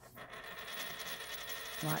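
A US quarter spinning on a hard countertop. It gives a steady metallic rattle with a thin high ring from the edge of the coin running on the surface, starting just after it is flicked.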